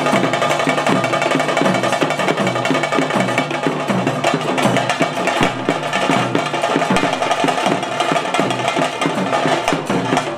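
Bhuta kola ritual drumming: two dolu barrel drums beaten with sticks in a fast, unbroken rhythm, joined by smaller drums.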